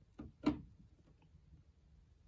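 Two short clicks, the second louder, as a charging plug is pushed into the DC input port of a Jackery Explorer 1000 power station.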